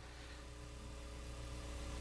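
Faint steady hum and hiss of room tone, with a few held low tones, slowly growing a little louder.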